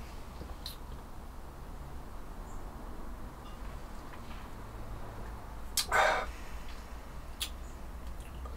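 A man taking a drink of ale from a glass: one short breathy sip about six seconds in, with a couple of faint clicks over a steady low room hum.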